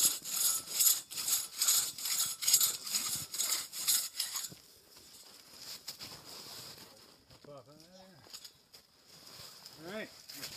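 Two-man crosscut saw cutting through an ash trunk, rasping back and forth at about two strokes a second, then stopping about four and a half seconds in.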